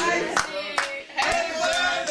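A small group singing a birthday song while clapping along in time, about two or three claps a second.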